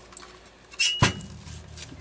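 Handling noise from a chainsaw being turned over by hand: a brief squeak, then a single sharp knock about a second in.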